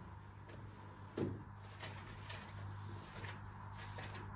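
Quiet room tone with a faint steady hum, broken by a few soft handling sounds, the clearest a small knock about a second in.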